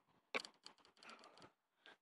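Near silence broken by a sharp click about a third of a second in, then a run of faint ticks and scrapes that stops after about a second and a half.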